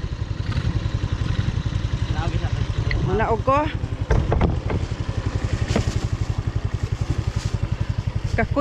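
An ATV engine running steadily with a rapid, even pulsing chug, heard from on board the vehicle.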